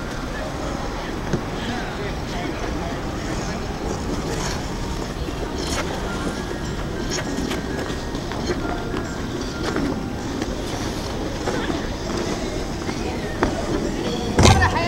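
Busy outdoor ice rink: indistinct voices of skaters over a steady low rumble, with a few short scrapes of skate blades on the ice.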